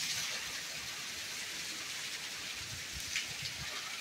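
Heavy rain falling steadily, an even hiss of rain on the ground and standing water, with a few short low rumbles in the second half.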